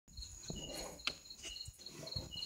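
Crickets chirping: a steady high trill with a quick, even pulsing of chirps, faint overall, and a single light click about a second in.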